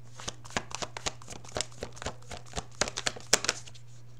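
A deck of tarot cards being shuffled by hand: quick, irregular clicks and flicks of card on card, loudest near the end and stopping shortly before it.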